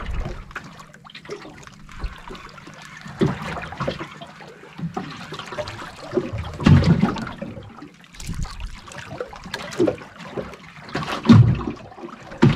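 Sea water lapping and sloshing against the hull of a small outrigger boat in irregular slaps, loudest about seven seconds in and again near the end.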